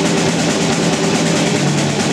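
A live rock band playing loud: electric guitars and a drum kit in a dense, steady wall of sound.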